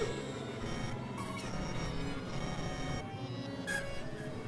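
Experimental electronic synthesizer music: dense layered drones of many steady tones, with short bright hissing flashes about a second in and again near the end.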